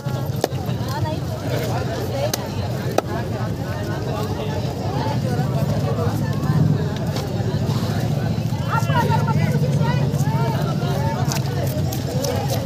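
A large wooden-handled knife chopping fish on a wooden block, giving a few sharp knocks, over a steady low rumble and background voices.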